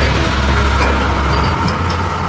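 Steady, loud low mechanical rumble with a wash of noise above it, like heavy industrial machinery.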